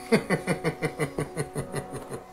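A person laughing: a quick run of about eleven short 'ha' pulses, about six a second, each dropping a little in pitch.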